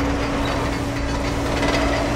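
Film soundtrack: rain falling as a rough, steady wash over a constant machine hum and a low rumble.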